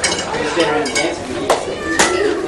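Several people chattering at once in a room, with a few sharp clicks and knocks, the clearest about one and a half seconds in.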